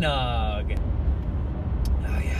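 Steady low road and engine rumble inside a moving car's cabin. A man's voice draws out a falling word at the start, and a short click comes near the end.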